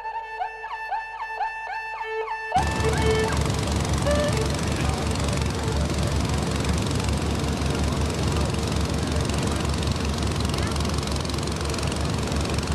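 Violin music that cuts off abruptly about two and a half seconds in. It is followed by the steady, fast thudding of a small open canal boat's exposed engine running under way, with water rushing past.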